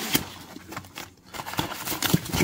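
Cardboard box flaps and a white foam packing wrap rustling and crinkling in the hands as the wrapped board is pulled out of a small box, with a sharper knock just after the start and a brief lull about a second in.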